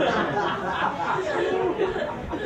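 Audience laughing and chattering, many voices at once, in response to a stand-up punchline.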